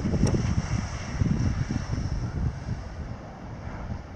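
Wind buffeting the microphone in uneven gusts over a steady hiss of light surf, easing off near the end.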